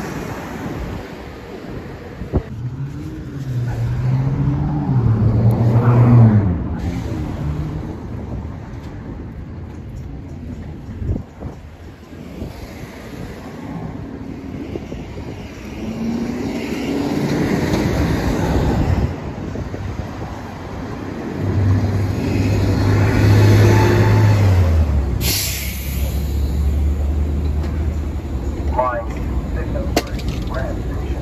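City street traffic: engines of passing vehicles swelling and fading, one low drone dropping in pitch late on, with a brief sharp hiss about five seconds before the end.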